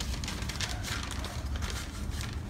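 Paper rustling and crinkling as a letter is drawn out of its envelope and unfolded, a dense run of irregular crackles over a low background rumble.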